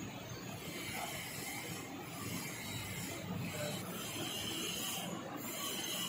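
High-pressure hot water jet machine running, a steady noisy hiss of hot water spraying into a stainless steel tank.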